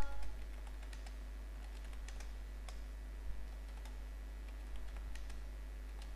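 Faint, irregular keystrokes on a computer keyboard, over a steady low hum.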